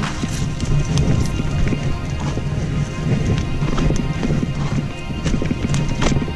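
Full-suspension mountain bike descending a dirt trail: tyres rumbling, with the bike knocking and rattling irregularly over bumps, under background music.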